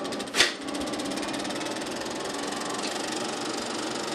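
Cinema film projector running with a steady, rapid mechanical clatter. A single sharp click about half a second in, as a button on its control panel is pressed.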